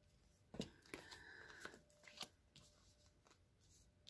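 Near silence with a few faint clicks and rustles of oracle cards being handled, about half a second in and again between one and two seconds in.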